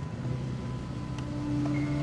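Background score fading in: a low held note, joined about a second in by a higher held note and near the end by further high notes, growing slowly louder.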